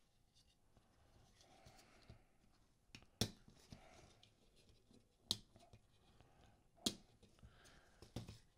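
Faint handling of a plastic vacuum manifold and its rubber hoses being worked loose from a circuit board, with three sharp clicks about two seconds apart.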